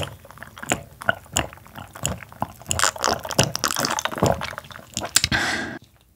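Close-miked gulps and swallows of a carbonated omija drink: a string of short wet mouth and throat clicks. A short breath out comes near the end.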